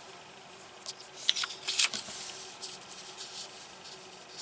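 Hand brushing over a sheet of paper and picking up a plastic marker pen: a few short, faint rustles and scrapes, clustered about one to two seconds in.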